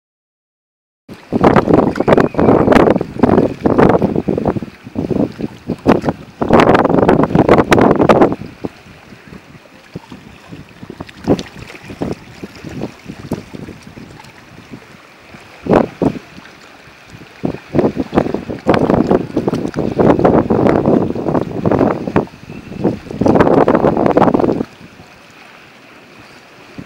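Wind buffeting the microphone in loud, irregular gusts lasting a second or a few seconds each, with quieter stretches of the wash of small waves on shallow sea water between them.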